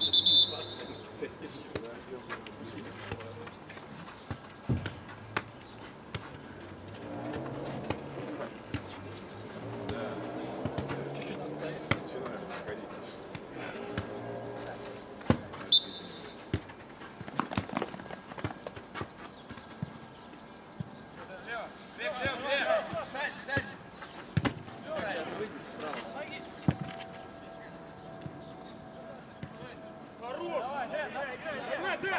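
Football match sounds on an artificial pitch: a ball being kicked, sharp thuds scattered throughout, with players shouting in stretches. A short, high referee's whistle blast sounds right at the start and another about 16 seconds in.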